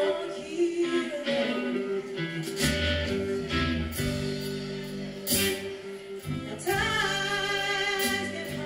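Live band music: a woman singing over electric guitar, with low bass-guitar notes coming in a few seconds in.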